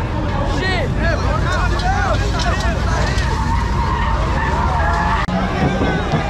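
A car's tyres screeching in a burnout over the low rumble of its engine. A crowd shouts and whoops throughout.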